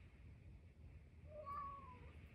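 A tuxedo cat gives one meow, a little under a second long, near the end, falling slightly in pitch at its close, while carrying a plush toy in its mouth.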